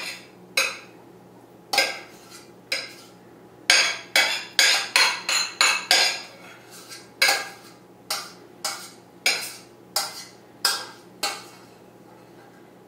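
A spoon scraping and knocking against the inside of a stainless steel pot as cooked brown rice is scooped out, in a run of sharp strokes. The strokes come fastest about four seconds in, then roughly every half second.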